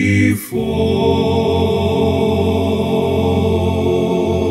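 Four-part a cappella male singing, one man's voice multi-tracked into close harmony, with a brief break about half a second in and then one long held chord.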